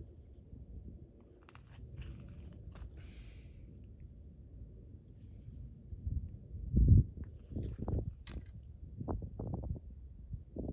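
Low rumbling noise close to the microphone, with scattered small clicks and rustles and a heavy low thump about seven seconds in: handling and movement noise at the camera.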